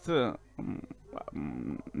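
Speech only: a spoken word ends, then a quieter, muffled voice talks underneath.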